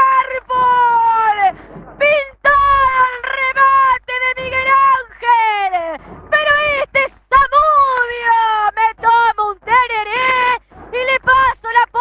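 A female radio football commentator's drawn-out goal cry: long, high held notes that fall in pitch, breaking into quicker excited shouting near the end.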